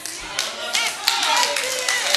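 Church congregation clapping in praise, starting about half a second in and growing denser, with voices calling out over it.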